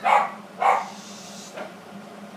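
A dog barking twice in quick succession, about half a second apart, near the start.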